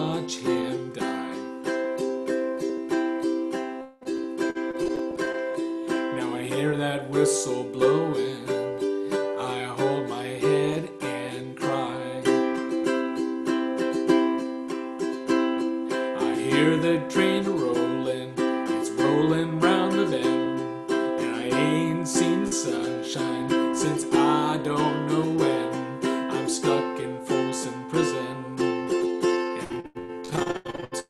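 Baritone ukulele strummed in a steady rhythm through simple major and seventh chords, with a man's voice singing along over the strumming from about six seconds in.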